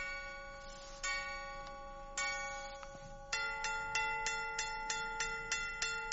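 A clock chime sound effect striking 4:10: four slow, ringing strikes about a second apart, then a quicker run of strikes at about three a second.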